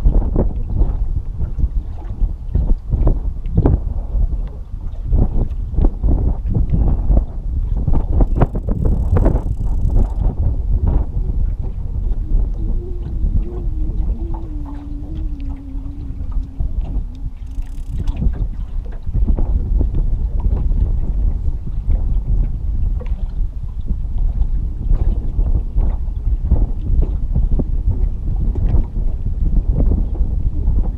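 Wind buffeting the microphone and fast river current slapping against the hull of an anchored fishing boat, in a steady rumble broken by frequent irregular thumps. A faint low hum comes in midway and drifts slightly lower before fading.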